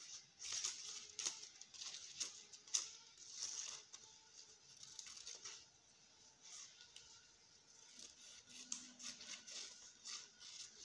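Scissors cutting lined notebook paper: a string of faint, irregular snips with the paper rustling.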